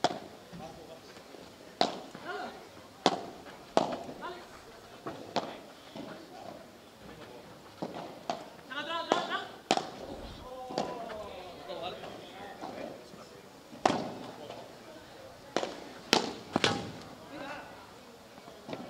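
Padel ball struck with solid paddle rackets and bouncing during a rally: sharp pops at irregular gaps of one to four seconds, with several in quick succession near the end.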